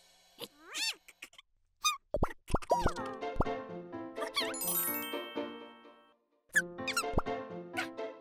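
Cartoon sound effects: short squeaky chirps that glide up and down in pitch, with boing-like blips, over bouncy children's background music. The music comes in about two and a half seconds in, dies away just after six seconds, and starts again half a second later.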